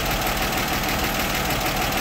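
Chevrolet 235 inline-six engine of a 1960 Grumman Olson Kurbside step van idling steadily while it warms up, just back in running order after a tune-up.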